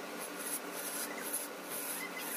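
Hand turning tool cutting a spinning wooden rolling pin on a lathe: a continuous scraping hiss of wood being shaved off, surging two or three times a second as the tool bites.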